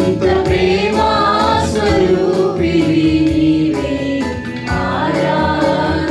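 A small group of women and a man singing a Christian worship song together into microphones, over an accompaniment with a steady beat.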